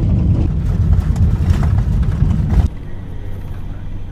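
Loud low rumble of a moving vehicle picked up by the camera's own microphone, which cuts off abruptly about two and a half seconds in, leaving a quieter, faint hum.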